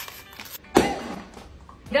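Cardboard tube of refrigerated cinnamon roll dough popping open as its paper wrapper is peeled: one sharp pop a little under a second in.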